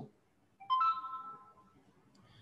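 An electronic notification chime: a few quick notes stepping upward, then ringing on and fading out within about a second.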